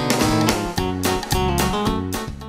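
Instrumental Romanian party music from a live band's arranger keyboard, with a strummed guitar-like accompaniment on a steady beat of about four strokes a second.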